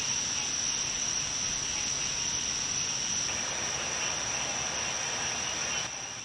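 Crickets chirping in a steady chorus: one continuous high-pitched trill over a faint hiss.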